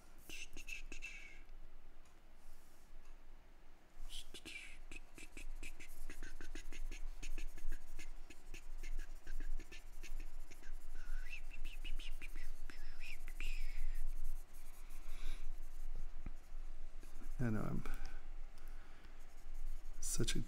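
A man whistling softly and breathily: short high notes and falling glides. Under the whistling come quick clicks and the scratch of a stylus on a graphics tablet and keyboard keys. A brief vocal sound comes near the end.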